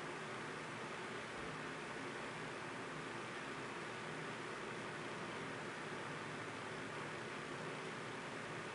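Steady, even hiss with no distinct events: the background noise of the recording.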